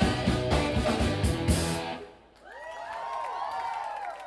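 Live funk band with drums, horns and keyboards playing the final bars of a song and stopping together about halfway through. The audience then cheers and whoops.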